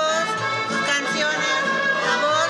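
Mariachi band playing, with long held melody notes.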